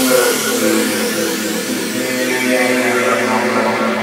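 Closing bars of a drum and bass track: the drums and sub-bass have dropped out, leaving held synth chords over a wash of high hiss, slowly getting quieter.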